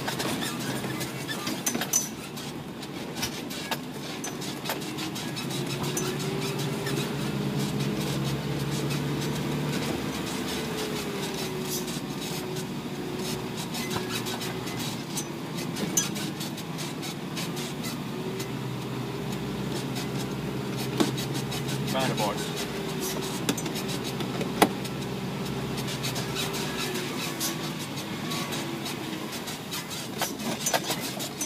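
Isuzu NPR 4WD truck's diesel engine running on a rough road, its pitch rising and falling slowly with the revs. Constant small rattles and clicks run under it, with a few sharper knocks in the second half.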